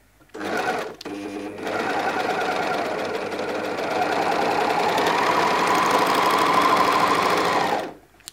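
Bernina overlocker (serger) stitching a fabric sample: a brief run, a short pause, then a steady rapid stitching rhythm that speeds up about halfway through and stops suddenly near the end.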